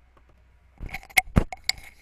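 A quick run of sharp clicks and clinks, starting a little under a second in, with a few loud strokes that ring briefly.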